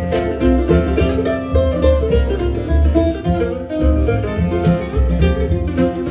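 Acoustic bluegrass band playing an instrumental passage between verses: mandolin, acoustic guitar and upright bass plucked together, the bass pulsing steadily under the strings.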